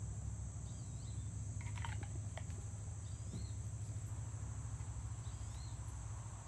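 A steady high-pitched chorus of insects, typical of crickets, over a low steady rumble, with a few short bird chirps and a couple of faint taps about two seconds in.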